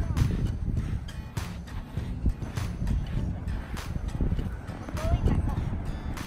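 Wind rumbling on the microphone, with irregular soft knocks through it a few times a second, and a short voice-like sound about five seconds in.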